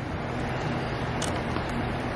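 Steady background hiss with a low hum, and a few faint clicks.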